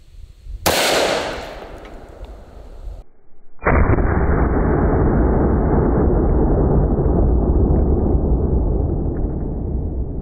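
A single shot from a Desert Eagle .50 AE pistol, sharp and loud, ringing out and dying away over about a second. About three and a half seconds in the same shot comes again slowed down: a deep, dull boom with the highs gone that drags on as a long rumble to the end.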